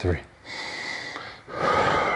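A man breathing hard through his mouth while doing an abdominal crunch: two long, hissy breaths, one about half a second in and the next near the end.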